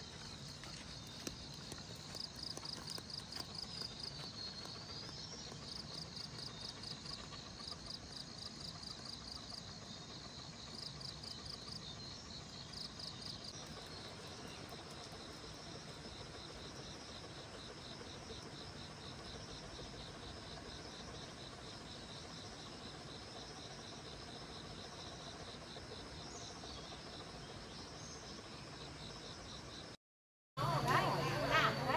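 Insects chirping in fast, even high-pitched pulses, strongly pulsing through the first half and settling into a steadier trill after about the middle.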